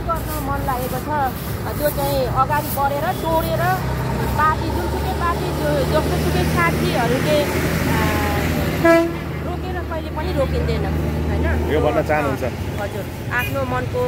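Street traffic under talking voices. A vehicle engine hums low and steady for several seconds, and a short horn toot sounds about nine seconds in.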